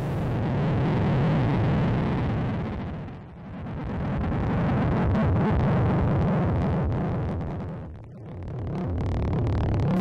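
Synthesizer drone: a dense, noisy, low-weighted sustained texture that swells and sinks in slow waves, fading down briefly about three seconds in and again about eight seconds in.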